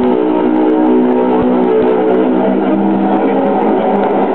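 Guitar-led recorded music played loudly through the loudspeakers of a street busker's miniature DJ-booth rig.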